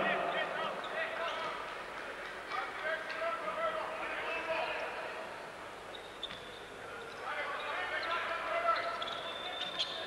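Basketball game sound in an arena: a ball bouncing on the hardwood court amid the crowd's voices, which swell again near the end.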